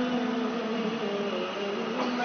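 A man's voice holding a long, drawn-out sung note of the adhan, the Islamic call to prayer, amplified through a microphone and loudspeakers; the pitch wavers and dips slightly about a second in.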